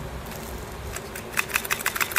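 A quick run of small plastic clicks and taps, starting about one and a half seconds in, as a replacement keycap is pressed onto a keyboard switch plunger wrapped in PTFE tape to make it grip.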